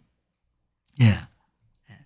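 A man's single short spoken 'ye' (yes), about a second in, with a falling pitch. A faint short sound comes near the end. Otherwise silence.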